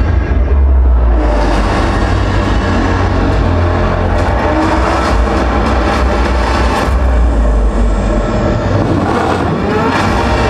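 Soundtrack of a cinematic film about the building's construction, played loud over a theater's speakers: music over a deep, steady low rumble.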